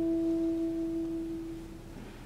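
Saxophone and concert band holding two soft, nearly pure sustained notes that fade away: the upper note stops about a second and a half in, the lower one just before the end.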